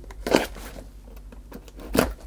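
Small tape-wrapped cardboard box being handled and pried open by hand: quiet cardboard scraping and rustling, with a sharp snap at the very end.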